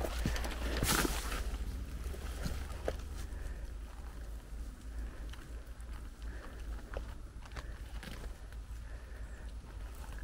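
Footsteps and rustling on a forest floor of dry spruce needles and twigs, with scattered cracks and snaps; the loudest crack comes about a second in. A low steady rumble runs underneath.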